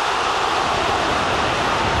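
Football stadium crowd, a loud steady wash of many voices reacting to a shot on goal that goes close but misses.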